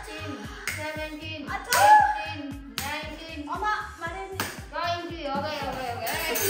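Background music with a steady beat, over which a woman cries out and sharp smacks land a few times: a steel spoon striking bare soles of the feet.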